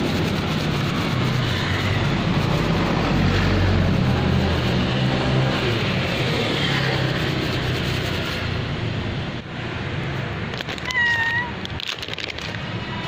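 A cat meows once, a short call about a second before the end, over steady street traffic noise with a low engine hum.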